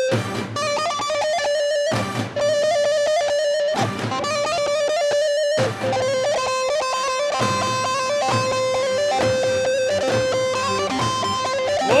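Live amplified Turkish folk dance music, led by a plucked long-necked lute (bağlama) playing a quick, busy melody. A shouted "vay" comes right at the end.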